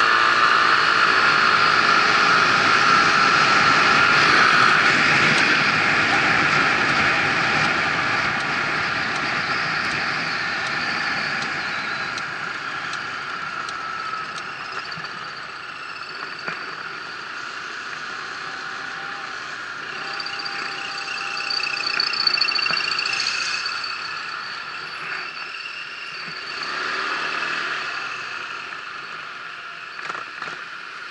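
Kymco Agility City 125 scooter ridden at low speed: its single-cylinder engine running under road and wind noise, loudest in the first several seconds and quieter through the second half as the scooter slows.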